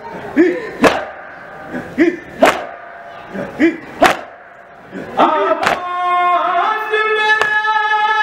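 Matam: men beating their chests in a steady rhythm, the sharp strokes falling mostly in pairs about every one and a half seconds, each with a short chanted cry from the group. About five seconds in, a solo male voice starts singing the nauha in a long, held melody while the chest beats go on.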